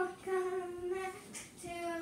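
A child singing a short chant on held, high notes: one sustained note in the first second, a brief pause, then another note starting near the end.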